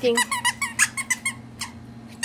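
Squeaker inside a plush dog toy squeezed again and again, giving a quick run of short squeaks over about a second and a half.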